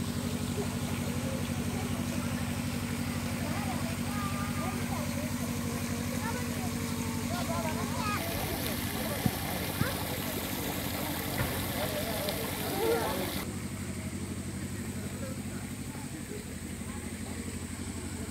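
A steady low engine hum running throughout, with faint voices. From about eight seconds in, the hiss of a water fountain's spray comes in for about five seconds and stops suddenly.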